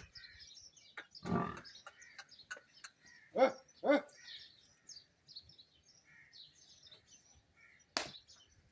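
Small birds chirping in scattered high notes throughout. A lower pitched call comes about a second in, and the loudest sounds are two short, falling calls about half a second apart, a little past three seconds in.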